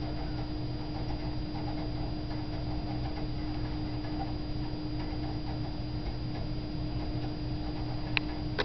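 Steady hum and high whine of a running computer, with a faint, even ticking underneath, as it boots Ubuntu from a live CD and reads the disc.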